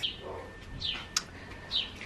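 A bird chirping twice, each a short falling note, with a single sharp click between the two chirps.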